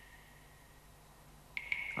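Near silence, then a steady high-pitched tone begins about a second and a half in and holds.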